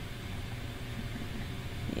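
Steady low hum with a faint even hiss: room and equipment noise with nothing else standing out.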